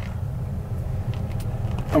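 A motor vehicle driving by on the road, heard as a steady low engine rumble.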